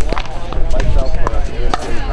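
Paddles striking a hollow plastic pickleball in a rally: several sharp pops, unevenly spaced, some of them fainter ones from neighbouring courts.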